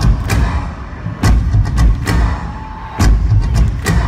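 Live band playing an instrumental passage with synthesizers and loud, heavy drum hits at uneven intervals, amplified through a concert PA and recorded from within the crowd.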